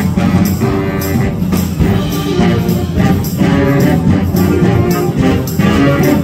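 Student concert band playing: clarinets, saxophone, trumpet and trombone holding sustained chords over a steady percussion beat of about two strokes a second.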